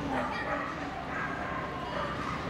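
A dog barking several times, over background voices.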